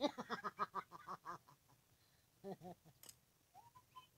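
A woman laughing: a quick run of short ha-ha bursts that fades after about a second and a half, then two more short bursts about halfway through.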